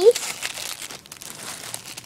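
Clear plastic packaging crinkling irregularly as hands handle a bagged squishy toy.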